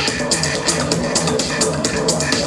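Electronic dance music mixed by a DJ over a club sound system, with a steady beat and evenly repeating hi-hat ticks over a pulsing bass.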